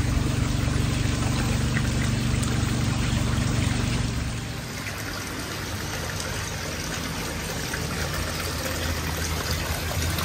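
Steady trickle and splash of water from a garden koi pond's small waterfall. A low hum sits under it for the first four seconds or so, then fades out.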